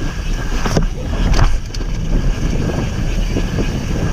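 Wind buffeting the microphone of a camera on a mountain bike descending a dirt trail, over the rumble of the tyres, with a few sharp rattles from the bike over bumps, about a second in and again shortly after.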